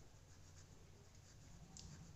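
Ballpoint pen faintly scratching across notebook paper in short strokes as a word is written, over a low steady room hum.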